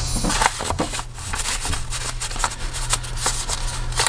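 Paper and cardstock being handled: a loose printed piece rustles and scrapes as it is slid into a paper pocket of a handmade junk journal, with a string of small irregular clicks and taps.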